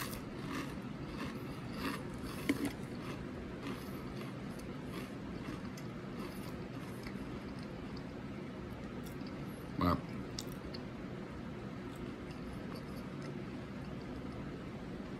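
A man chewing a mouthful of Pringles potato crisps with his mouth closed: faint scattered crunches, most of them in the first few seconds, over low steady room noise.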